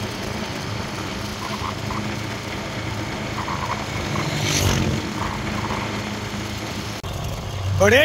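Motorcycle engine running steadily on the move, a low even hum under rushing wind noise, with a brief louder whoosh about four and a half seconds in.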